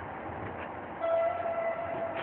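A held horn tone with overtones sets in about a second in and carries on, over steady outdoor background noise.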